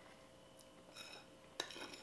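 Faint clinks of a metal spoon against a ceramic bowl: one light tap about a second in, then a few quick clinks near the end as the spoon goes back into the bowl.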